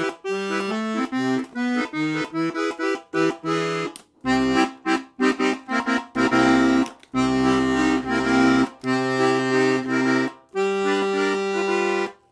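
Piano accordion's 120-bass side played alone: bass and chord buttons in short separate notes at first, then longer held chords with deep bass notes, with brief breaks between phrases.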